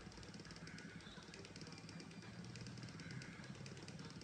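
Very faint room tone with a low background hiss; no distinct sound.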